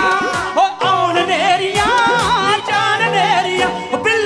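Live Punjabi song: male singers with highly ornamented, wavering vocal lines over a band with drum kit and steady bass notes, heard through the stage sound system.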